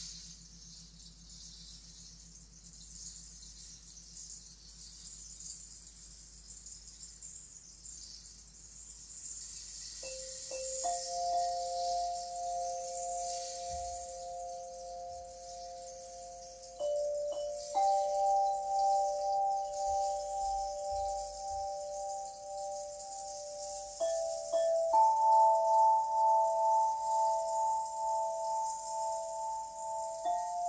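Singing bowls struck one after another with a soft mallet, starting about ten seconds in. Each rings on as a long pure tone with a slow wavering pulse, and five or so notes layer over each other, mostly stepping up in pitch. A soft high hiss runs underneath, on its own for the first ten seconds.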